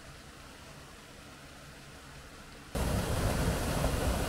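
Faint steady low background for the first few seconds, then, from just under three seconds in, the loud, even rush of a waterfall pouring through a rocky gorge.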